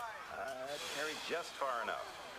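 Indistinct speech: a voice talking that the recogniser did not transcribe.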